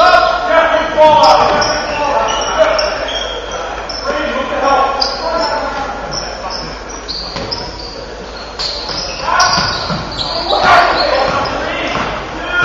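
Voices and shouts from players and spectators echoing in a large gym, with a basketball bouncing on the hardwood court and many short high squeaks, typical of sneakers on the floor.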